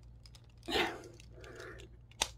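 Hard plastic parts of a Transformers action figure being handled and pried by hand: faint clicks and a short scrape just under a second in as a stiff, tight-fitting door section is worked out.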